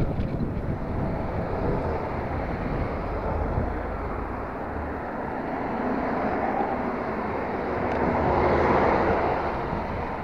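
Passing cars and road noise heard from a moving bicycle, with wind on the microphone; one car swells up and fades away about eight to nine seconds in.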